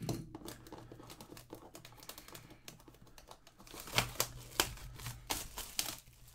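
Clear plastic shrink wrap being torn and crinkled off a sealed cardboard box of trading cards, a quick run of sharp crackles that gets louder about four seconds in.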